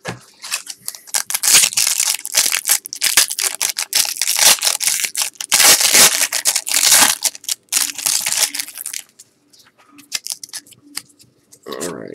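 Foil wrapper of a 1997 Topps baseball card pack crinkling and tearing as it is opened, a dense crackle for about nine seconds, then a few light clicks of the cards being handled.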